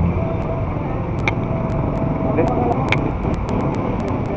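Steady low rumble of passing street traffic, with faint voices in the background and scattered light clicks.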